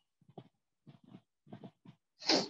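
Near silence broken by a few faint, short vocal sounds spread through the two seconds.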